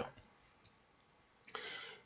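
A pause between spoken phrases: near silence with a couple of faint mouth clicks, then a short, soft intake of breath near the end, just before speaking again.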